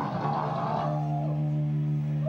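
Live stoner-rock band playing loud; about a second in the dense playing stops and a single low amplified note is left holding steady and ringing out.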